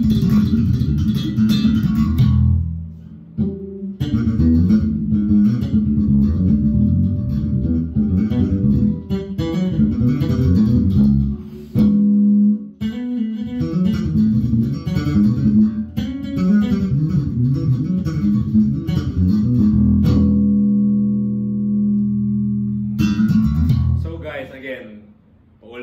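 Jazz-style electric bass guitar played solo: a busy run of plucked notes with a short break about three seconds in, and a single note held ringing for a couple of seconds near the end.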